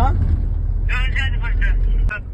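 Steady low rumble of a moving car heard from inside the cabin, cutting off suddenly right at the end. A voice speaks briefly about a second in.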